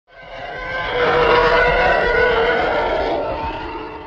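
Intro sound effect: one long swelling roar with several steady tones over a rushing haze. It fades in over about a second, holds loud, and tails off near the end.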